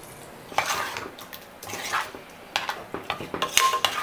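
Water poured into a pressure cooker pot over potato masala, then a metal ladle stirring the curry and clinking several times against the side of the pot.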